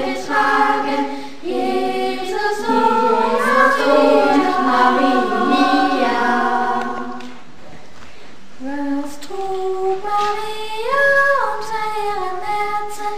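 A choir singing a slow song in held notes, with a brief softer lull a little past the middle before the voices come back in.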